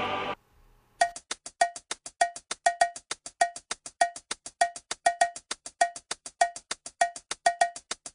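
Fast, even percussion pattern opening the closing music, starting about a second in after a brief silence: short, sharp clicks at about seven a second, with accented strokes that ring with a clear pitched note.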